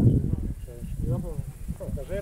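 People talking over a low rumble of wind buffeting the phone's microphone, with a loud gust right at the start.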